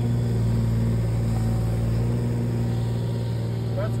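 Excavator's diesel engine running at a steady idle: a deep, even hum that does not change.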